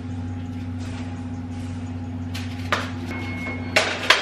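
A steady low appliance hum from the running kitchen range. Two sharp metal clacks, one about two-thirds of the way through and one near the end, come from a baking tray being pulled along the oven rack. A short high beep sounds between them.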